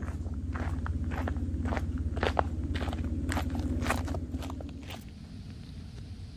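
Footsteps crunching on a gravel path, about two steps a second, growing louder as they approach and stopping after about four and a half seconds. A steady low hum runs underneath and ends at the same point.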